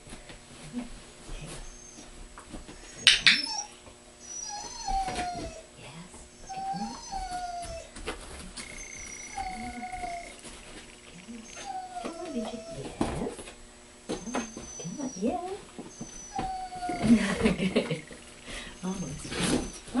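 Dog whining in short, falling whimpers, one every couple of seconds, with a single sharp click about three seconds in.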